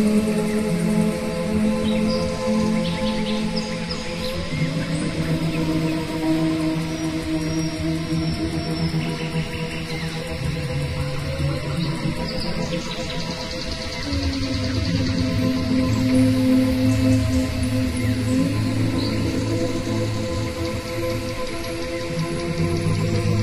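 Slow ambient background music of long held notes, the chord shifting to new pitches every few seconds.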